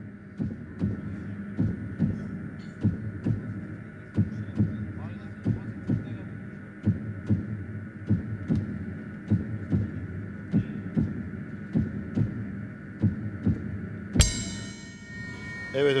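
TV suspense sound cue: heartbeat-like thumps, roughly two a second, over a steady synth drone, building tension before a verdict is announced. It ends with a sharp hit and ringing high tones about fourteen seconds in.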